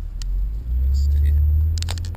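Car driving, heard inside the cabin: a low rumble of engine and road noise that swells about half a second in and eases near the end, with a few sharp clicks near the end.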